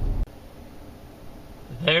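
Low rumble of a pickup truck's cab on the move cuts off abruptly a moment in, leaving a faint steady hiss; a man's voice starts near the end.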